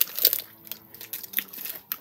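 Plastic sweet packet crinkling as it is handled: irregular crackles and rustles.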